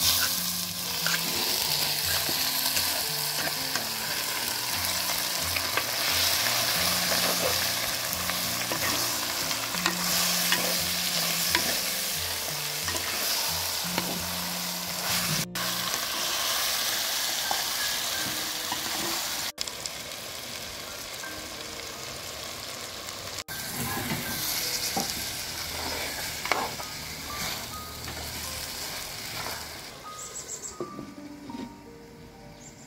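Chicken curry in coconut milk simmering in a clay pot: a steady hiss of bubbling and sizzling, broken by a few brief dropouts.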